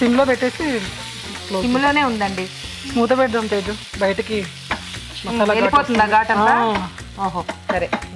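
Potato and capsicum pieces sizzling in an oiled nonstick frying pan while a wooden spatula stirs them, with squeaky, gliding tones from the spatula rubbing the pan on each stroke.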